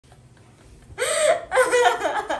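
A woman's voice in two loud, high-pitched vocal outbursts, the first about a second in, the second running on past the end.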